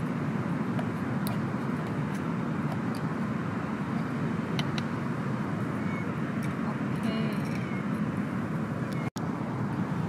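Steady low background rumble with a few faint light clicks and taps; the sound cuts out for an instant about nine seconds in.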